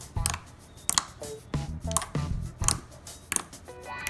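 Thick opaque slime being squeezed and kneaded by hand against a wooden tabletop, making sharp, irregular wet clicks and pops, about two a second.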